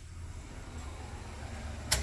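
Steady low hum of shop equipment, with a single sharp click near the end as the curing oven's door is opened.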